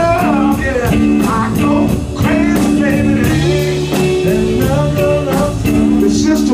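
Live blues band playing: a man singing over electric guitar, keyboards, bass and drums, with the drums keeping a steady beat.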